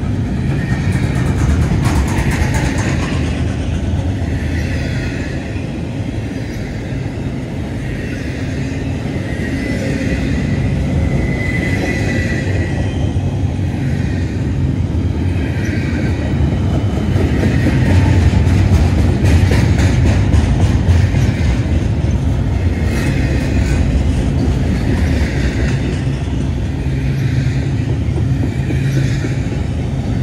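Double-stack intermodal freight train's well cars rolling past close by: a steady heavy rumble of steel wheels on rail. A higher whine swells and fades every two to three seconds as the cars go by, with a few bursts of wheel clicks, loudest around two-thirds of the way through.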